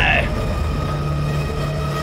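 A steady low rumbling drone with faint sustained higher tones, the ominous ambient soundtrack of a horror scene. A falling sound fades out just after the start.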